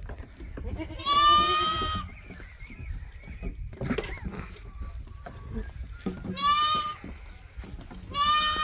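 A goat kid bleating twice: a high, steady call of about a second soon after the start, and a shorter one near the end.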